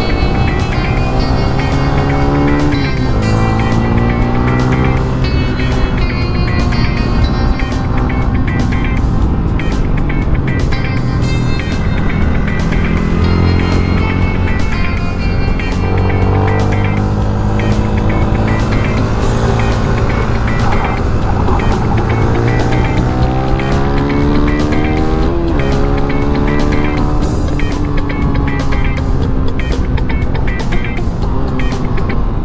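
Yamaha Sniper 155's single-cylinder four-stroke engine at racing speed, its note climbing under acceleration and dropping back at each gear change, then falling as it slows. Background music with a steady beat plays over it.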